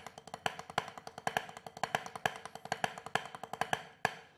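Drumsticks playing a fast, even stream of strokes on a practice pad, with regularly accented strokes standing out: the Mozambique bell pattern worked out in groups of six with six-stroke rolls. The playing stops just before the end.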